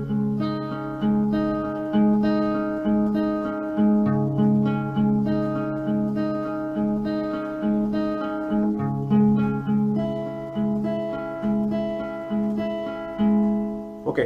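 Acoustic guitar playing a picked arpeggio on a barred C♯ minor chord, shifting to C♯sus2 when the middle finger lifts. Single notes, about two a second, ring over one another above a sustained bass note that is struck again now and then.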